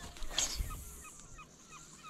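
A spinning rod being cast: a short swish about half a second in, then a faint run of evenly spaced chirps, about four a second.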